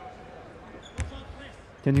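A single basketball bounce on the hardwood court about a second in, over faint arena background noise.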